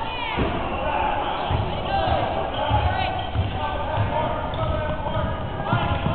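A basketball bouncing on a hardwood gym floor during play, with sneakers squeaking and indistinct shouting voices in the gymnasium.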